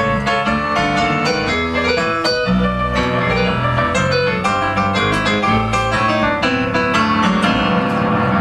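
Live band in an instrumental break: an electric stage piano leads with quick runs of notes, over sustained upright bass notes, guitar and drums.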